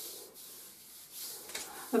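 Oil-slicked palms rubbing up and down bare shins and feet, skin sliding on skin in a few soft swishing strokes.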